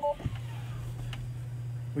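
Tesla Model 3 warning chime, a two-tone beep that stops just after the start, sounding as the driver's door is opened with the car in drive. A faint steady low hum follows, with a light click.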